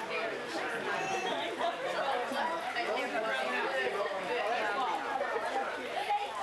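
Several people talking at once: overlapping party chatter, with no single voice standing out.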